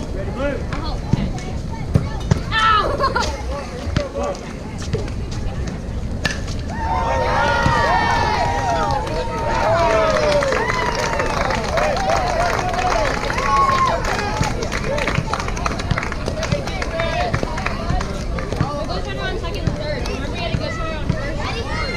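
Spectators shouting and cheering, several voices overlapping. It swells about six seconds in, with one long held shout, and dies down after about fourteen seconds.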